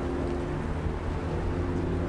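A steady low engine drone, with a hum that shifts slightly in pitch now and then.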